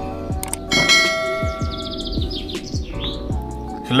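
Subscribe-button animation sound effects over background music with a steady beat: a click, then a bright bell-like ding about three-quarters of a second in that rings on, with a quick run of falling chime notes as the notification bell appears.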